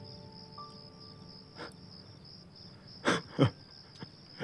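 Crickets chirping in a steady, even trill, with a few held music notes fading in the first second. About three seconds in come two short, loud bursts close together.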